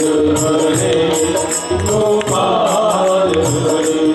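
Men singing a Hindu devotional bhajan to Krishna, accompanied by a harmonium's sustained reed tones and a steady percussion beat.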